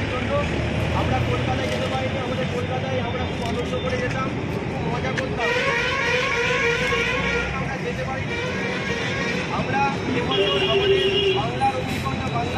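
Street noise with road traffic and the low talk of a crowd gathered close by, steady throughout.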